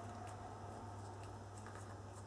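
Faint rustling and a few light ticks of fingers tying a chiffon ribbon, over a steady low hum.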